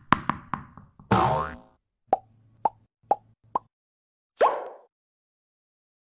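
Cartoon sound effects for an animated logo. A quick run of bouncing-ball taps comes closer together and fainter each time, then a short sliding tone sounds. Four short pops follow about half a second apart, and one last pop comes about four and a half seconds in.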